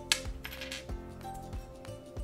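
Small plastic LEGO minifigure parts clicking and clattering as they are handled, with a sharp click just after the start and a short rattle soon after, over background music with a steady beat.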